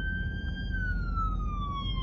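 An emergency-vehicle siren wailing in one long tone that holds high, then slowly falls in pitch, over a low steady rumble.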